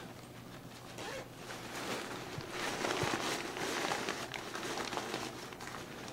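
Rustling and crinkling of a Vicair wheelchair air cushion's fabric cover and small plastic air cells as a compartment is unzipped and handfuls of cells are pulled out.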